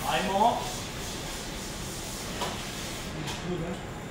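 Steady, even noise of a working commercial kitchen. A short burst of voice comes at the very start, and faint talk near the end.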